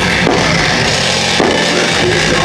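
Death metal band playing live, loud, with the drum kit and its cymbals up front in the mix.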